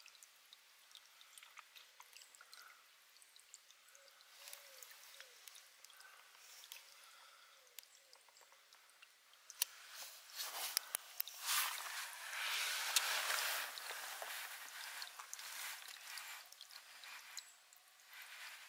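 Spring water running from a metal pipe spout and splashing onto wet stones, a faint trickle at first that grows louder and fuller from about ten seconds in.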